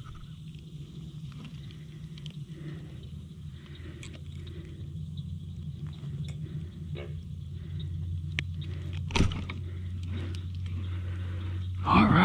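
Small clicks and one sharp knock about nine seconds in as a landed bass and fishing gear are handled in a plastic kayak, over a steady low hum. A frog croaks loudly right at the end.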